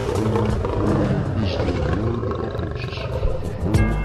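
Backing music with a deep roaring, animal-like voice laid over it, its pitch arching up and down several times.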